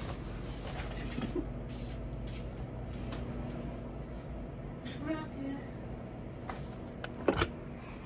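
Steady low room hum with scattered soft knocks and rustles, a short vocal sound about five seconds in, and one sharp knock a little after seven seconds.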